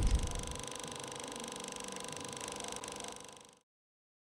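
Production-company logo sound effect: a deep boom dying away, then a faint steady whirring tone with a fine mechanical flutter that fades out about three and a half seconds in.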